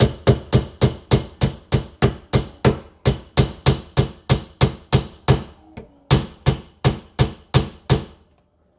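A hammer striking the underside of a kitchen sink over and over, about three blows a second, with a brief pause about six seconds in before the blows resume.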